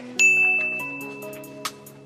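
A single bright, bell-like ding sound effect about a quarter second in, ringing out and fading over about a second and a half, over background music.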